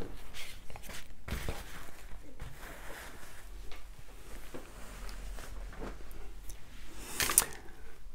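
Faint handling sounds: light clicks and soft rustling of cloth as small items are set out and a cloth pouch is handled on a tabletop, with a sharper click about seven seconds in. A low steady hum sits underneath.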